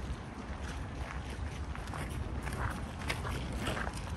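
Footsteps on a gravel path, about two steps a second, over a low steady rumble.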